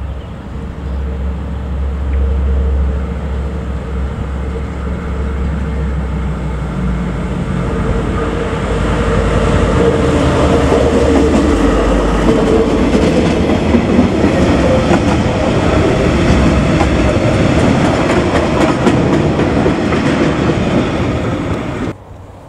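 KiwiRail DL class diesel-electric locomotive hauling a freight train of flat wagons past at close range. Its low engine rumble builds first, then the wagons' wheels clatter over the rail joints, getting louder through the second half.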